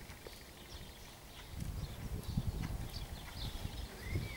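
A horse's hooves thudding on a sand arena surface at canter. The thuds are soft at first and grow louder from about a second and a half in as the horse comes nearer.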